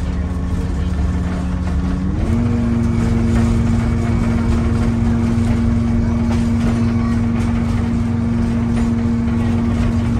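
Vintage electric trolley car running along the track: a low rumble with a steady whine that steps up in pitch about two seconds in and then holds.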